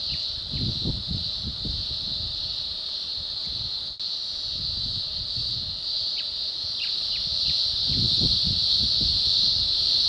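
Steady, high-pitched insect chorus, a continuous shrill drone, with an uneven low rumble underneath; it breaks off for an instant about four seconds in, then carries on.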